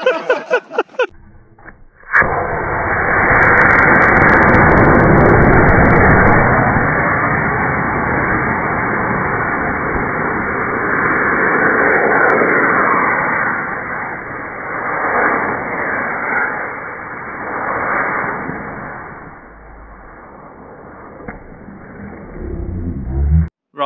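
Rocket motor on a rocker cover racer burning: a loud, steady hissing rush that starts suddenly about two seconds in, runs for about seventeen seconds and fades near the end.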